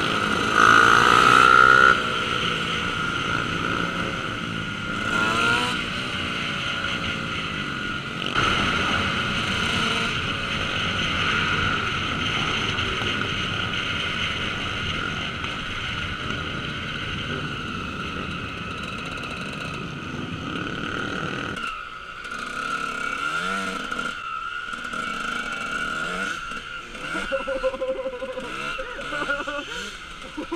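Dirt bike engine running and revving as it rides in a pack of motorcycles, heard from the rider's helmet with steady wind and road noise; the revs rise and fall near the start and again around five seconds in. About twenty-two seconds in the sound turns quieter and thinner, with shorter bursts of engine.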